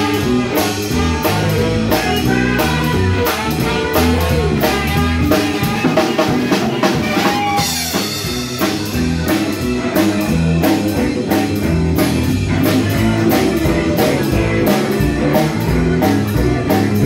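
Live band playing an instrumental passage on drum kit, electric bass and electric guitar, with a steady beat. There is a cymbal crash about halfway through.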